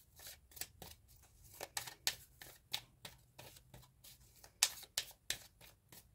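A deck of tarot cards being shuffled by hand: a run of short, irregular card snaps, a few each second.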